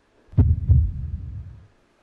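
A deep double thump in a heartbeat rhythm: two low booming hits about a third of a second apart that fade out within about a second.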